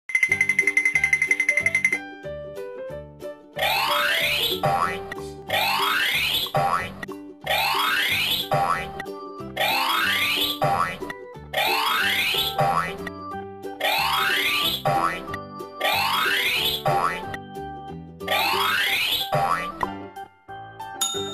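Cheerful children's cartoon music with a cartoon sound effect, a rising glide about a second long, played eight times about two seconds apart as ice cream cones drop into place one by one. It opens with a short pulsing high tone lasting about two seconds.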